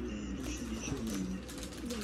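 A person's low voice murmuring without words, its pitch wavering up and down.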